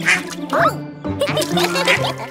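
Cartoon background music with a cartoon duck character quacking over it, including a rising-and-falling squawk about half a second in.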